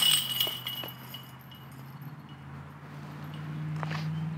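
Steel chains of a disc golf basket jangling as a putted disc strikes them, a sudden metallic rattle that rings and fades over about a second. The disc does not drop in: it is held up in the chains and falls out to the ground.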